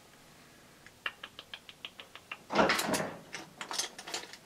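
Handling an eyeshadow compact and brush. A quick, even run of light clicks comes first, then a short, louder scraping rustle about two and a half seconds in, and a few more clicks.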